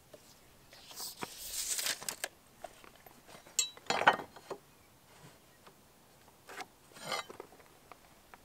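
Small hand-tool handling sounds: a tape measure blade running back into its case with a rattle and a snap about two seconds in, a sharp metal clink as a square is set on the board, and a rustle of tools in a tool belt near the end.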